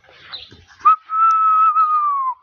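A person whistling one long, steady note that slides up at the start and drops in pitch as it ends, lasting about a second and a half.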